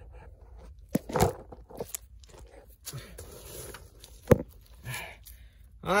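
Scuffing, crinkling and crunching of a person shifting about in a cramped crawlspace against plastic vapor-barrier sheeting, with irregular clicks and a single sharp knock about four seconds in.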